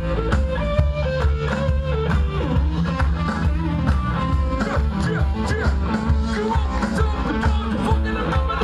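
Live band playing a number: electric guitar over bass and drums with a steady beat.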